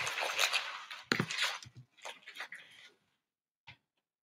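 Clear plastic trading-card pack wrappers being crumpled, then a few light knocks and taps as cards and packaging are handled. The sound dies away to near quiet after about three seconds.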